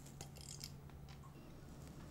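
A quiet room with a steady low hum and a few faint, small clicks in the first second, from a clear plastic capsule applicator tube being handled at the lips.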